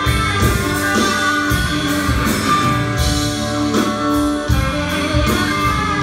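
A live blues-rock band playing an instrumental passage: electric guitars holding and picking notes over a steady drum beat.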